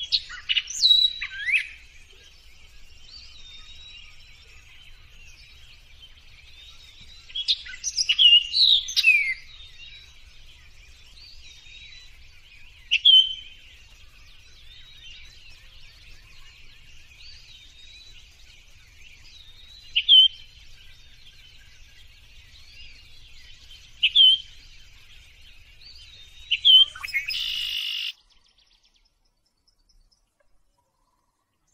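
Birds chirping and calling: loud clusters of short, sliding whistled calls every few seconds over steady quieter chirping, stopping suddenly near the end.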